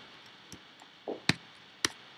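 Laptop keyboard keys clicking: a few sharp separate key presses, with a softer knock between them, as a terminal command is entered and run.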